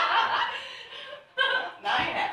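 People chuckling and laughing in a large room, mixed with snatches of talk; the laughter dies away after about a second and a short burst follows near the end.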